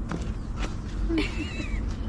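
An animal call: one short, high, wavering call that falls in pitch about halfway through, with a few low, brief sounds around it.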